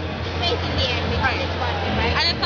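People talking over a steady low hum, with other voices around them.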